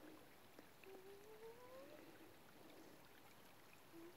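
Near silence, with faint water sounds of bare feet wading in a shallow creek. A faint rising tone about a second long comes about a second in.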